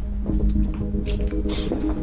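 Drama score music holding a low sustained chord, with a few short rustling or scuffing noises over it.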